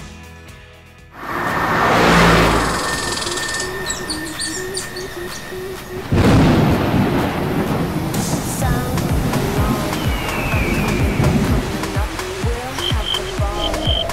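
Intro music with sound effects: a sudden loud rushing noise like thunder comes in about a second in, then a steady beat starts about six seconds in.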